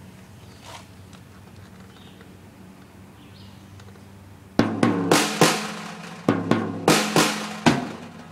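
Drum kit played with sticks: after about four and a half seconds of only a faint low hum, a short beat of about nine hits comes in, with the drums ringing between strokes.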